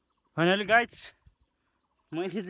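A man's voice: one short, two-part call or utterance with a wavering pitch, ending in a brief hiss.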